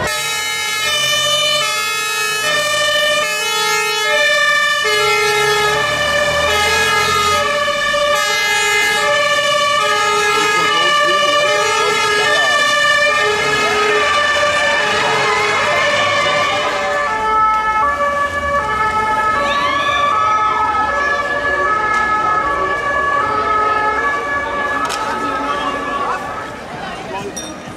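German two-tone sirens (Martinshorn) of fire engines on an emergency run, more than one horn sounding at once so their high-low alternations overlap. After about 17 seconds a different two-tone siren takes over, its alternation quicker.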